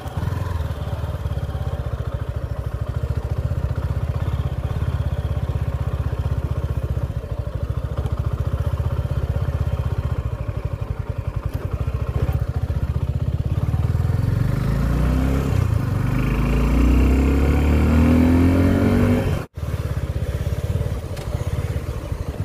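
Suzuki Gixxer SF 250's single-cylinder engine running steadily at low revs, then revving up with a rising pitch as the bike accelerates about fifteen seconds in. The sound breaks off suddenly for a moment near the end.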